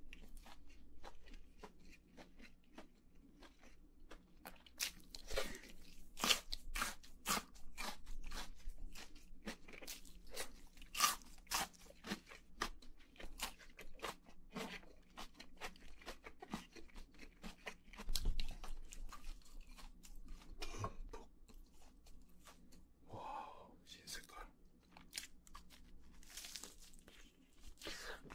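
Close-miked chewing of crispy fried chicken nuggets: a steady run of crackling crunches, loudest for several seconds in the first half.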